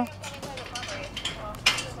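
A faint voice talking in the background, with a single sharp click about one and a half seconds in.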